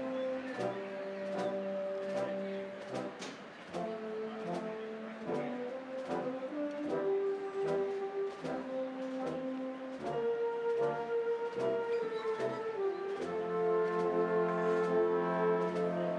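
Slow processional music played on brass instruments: sustained chords, each held for a second or two before the harmony moves on.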